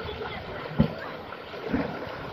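Swimmers splashing in a pool of water, with a splash as someone plunges in near the end, over a steady wash of water and wind on the microphone. A sharp thump about a second in is the loudest moment.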